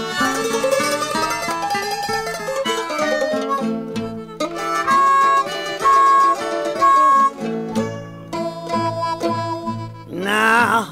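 Instrumental break in an acoustic country blues: guitar and mandolin picking, with three held high notes about halfway through.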